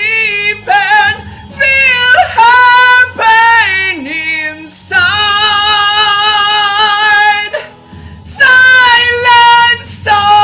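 A man singing a power-metal vocal line high in his range over an instrumental backing track, ending on long held notes with vibrato: one of about two and a half seconds past the middle, another just before the end.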